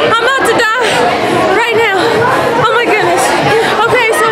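A woman talking close to the microphone over background chatter.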